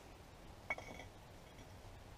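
Mostly quiet, with one faint clink of hard objects knocking a little under a second in, ringing briefly.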